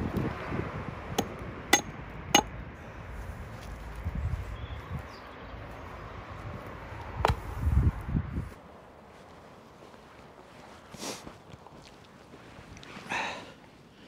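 An axe chopping the end of a wooden post to a point on a tree stump: a few sharp knocks in the first two and a half seconds, then one more about seven seconds in. Behind them is a low rumble that drops away abruptly just past halfway.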